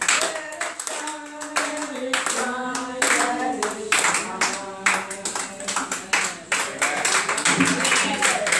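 A group of voices singing a slow, held melody, with hand clapping that gets denser in the second half.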